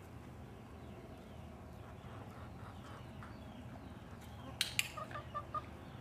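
A hand-held training clicker clicks twice in quick succession about four and a half seconds in, marking a small step by the horse. A few short clucks from chickens follow, over a faint steady low hum.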